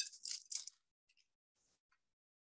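A few brief, faint rustling and scraping noises from hands handling the clay figure and a sculpting tool on the work mat, within the first second, then near silence.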